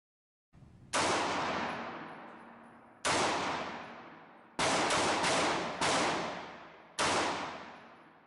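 Smith & Wesson Model 915 9mm semi-automatic pistol firing about six shots, fitted with a 16 lb recoil spring. The shots come irregularly: one, then another two seconds later, then three in quick succession, then one more. Each shot leaves a long echo dying away behind it.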